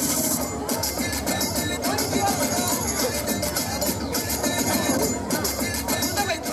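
Background music with a beat, played over the loudspeakers.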